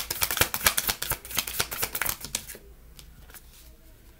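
A deck of tarot cards being shuffled by hand: a rapid run of card clicks that stops about two and a half seconds in.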